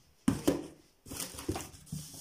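Cardboard shipping box being handled: two sharp knocks in the first half second, then cardboard scraping and rustling from about a second in.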